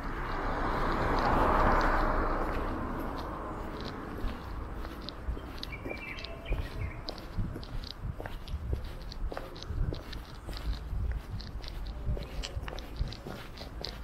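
Footsteps of a person walking on concrete paving blocks: irregular light steps and clicks over a low steady rumble. A rushing noise swells and fades in the first few seconds.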